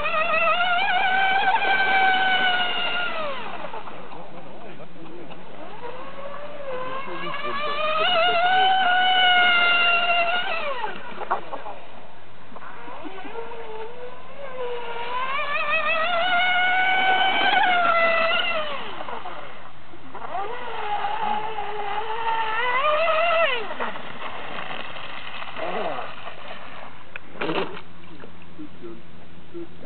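Radio-controlled model speedboat's motor whining at high speed. Its pitch rises and falls over four runs, each a few seconds long, with short lulls between them.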